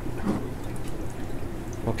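Steady low hum with faint trickling water: the running background of an aquarium fish room's tanks, filters and air pumps.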